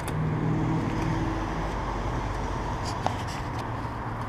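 A motor vehicle engine running steadily, a low hum with a faint click about three seconds in.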